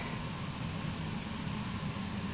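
A steady, even hiss of background noise, with no distinct events.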